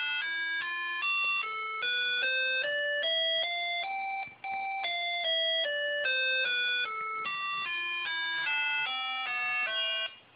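Microcontroller-driven synthesizer's small speaker playing a musical scale as buzzy electronic beeps, about three notes a second. The notes climb step by step to the top about four seconds in, break off for an instant, step back down, and start climbing again near the end.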